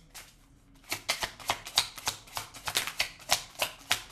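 A tarot deck being shuffled by hand. The cards start slapping together about a second in and keep going in a quick, irregular run of papery clicks.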